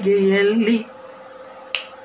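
A man singing unaccompanied holds a long note that ends a little under a second in. After a pause there is a single sharp click near the end.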